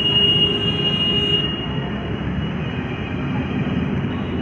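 Steady low rumble of highway traffic, with a faint high whine that fades out about a second and a half in.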